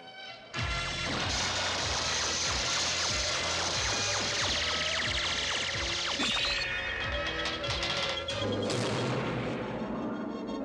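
Cartoon sound effects of crackling electric bolts and crashing blasts over dramatic background music. The effects start about half a second in and ease off near the end.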